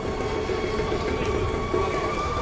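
Street traffic noise with a steady whine of several held tones running through it, in the manner of a train or a heavy vehicle.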